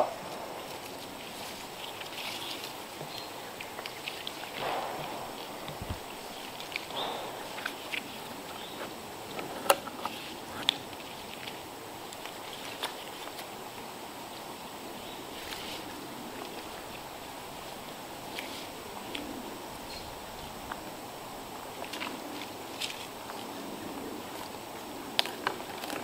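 Scattered light clicks, knocks and scuffs of tree-climbing gear (a climbing stick, rope and metal hardware against the bark) as a climber works his way up the trunk, over steady outdoor background noise.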